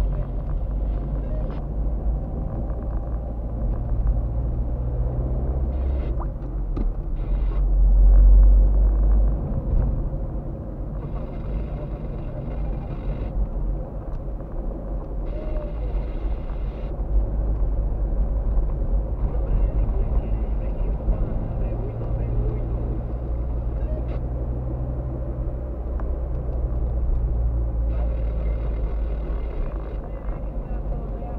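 Low road and engine rumble heard inside a moving car's cabin, swelling loudest about eight seconds in.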